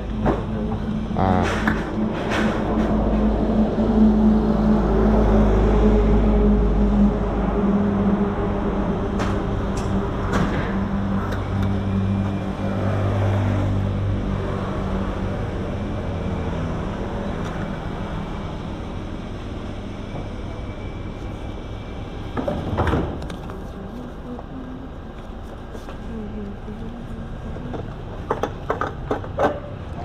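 A vehicle engine idling, loudest in the first third and slowly fading, with a few sharp clicks and knocks along the way.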